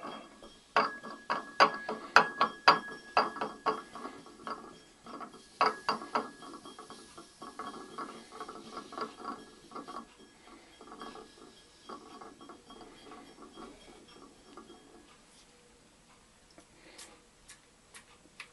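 A hand-turned potter's banding wheel being spun while terra sigillata is brushed onto a clay vase, giving a run of sharp clicks and ticks. The clicks are loudest in the first few seconds, then turn fainter and thin out toward the end.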